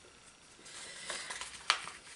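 A paper sticker sheet being slid and handled over planner pages, with soft rustling, a few light ticks, and one sharp tap near the end.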